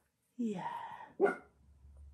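A dachshund vocalizing while its belly is rubbed: a drawn-out sound rising in pitch about half a second in, then a shorter call just after a second in.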